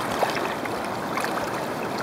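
River current flowing past, a steady rushing hiss of moving water.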